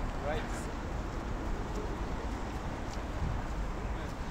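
Steady outdoor city ambience on a phone microphone, with a low rumble of wind on the microphone and a brief faint voice just after the start.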